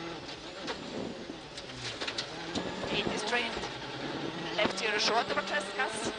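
Ford Fiesta RS WRC rally car's turbocharged 1.6-litre four-cylinder engine running hard at speed on a gravel stage, heard from the onboard camera inside the cockpit.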